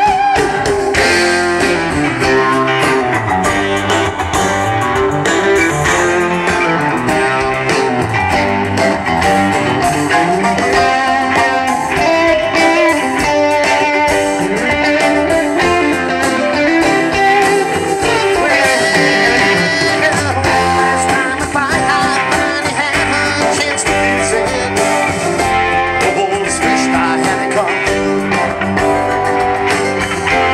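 Live band playing an instrumental section, with an electric guitar lead over acoustic guitar and the rest of the band, at a steady loud level.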